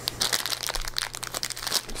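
A small clear plastic packaging bag crinkling and crackling in the hands as it is handled and turned over.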